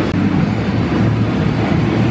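A band playing its reggae-leaning song loud, drums and bass to the fore, heard as a dense rumble with little clear melody.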